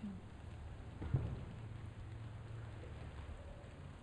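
Quiet room tone with a steady low hum and one brief knock about a second in.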